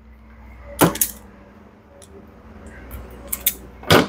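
Hand wire stripper clicking and snipping on a wire: a sharp snip just under a second in, a couple more a little after three seconds, and the loudest right at the end.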